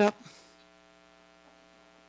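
A spoken word ends at the very start. Then only a faint, steady electrical hum of several even tones remains: mains hum in the sound or recording system.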